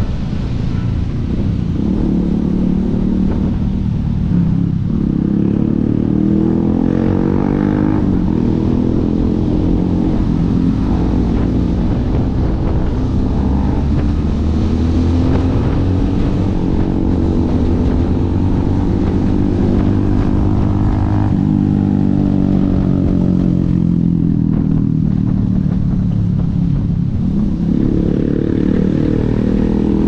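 Benelli TRK 502X's parallel-twin engine heard from the rider's seat while under way, its pitch climbing and easing with throttle and gears, with a sudden step in pitch about two-thirds of the way through.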